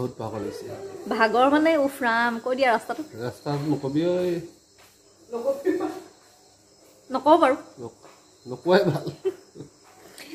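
A voice chanting and talking in short phrases with pauses, over a faint, steady high-pitched trill of crickets.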